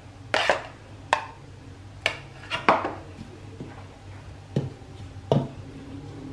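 A metal spoon clinking and knocking against ceramic bowls as thick beetroot paste is spooned onto flour: about six sharp knocks spread irregularly, the first the loudest.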